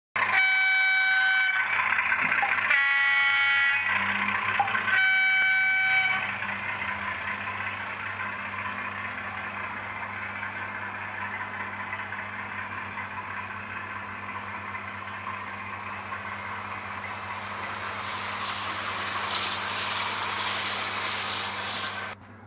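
OO gauge model diesel locomotive's sound decoder sounding its horn three times in the first six seconds, then the model train running past on the track with a steady running noise that grows a little near the end.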